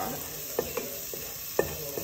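Crushed garlic sizzling in melted butter in a stainless steel pot, while a wooden spatula stirs it, scraping and tapping against the pot bottom several times.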